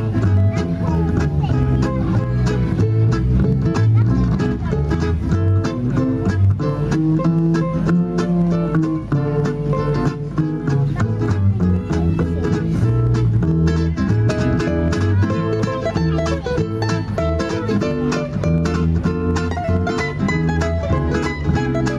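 Live acoustic vintage-jazz band playing an instrumental passage: two ukuleles strummed and picked over a plucked upright double bass, in a steady, busy rhythm.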